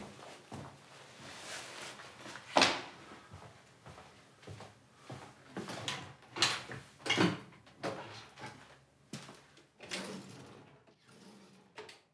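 Kitchen drawers being pulled open and pushed shut one after another, a series of wooden knocks and rattles, the loudest about two and a half seconds in and several more close together past the middle.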